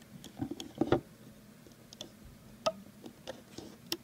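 Scattered light clicks and taps as rubber loom bands are stretched and placed onto the plastic pegs of a Rainbow Loom, the loudest cluster about a second in.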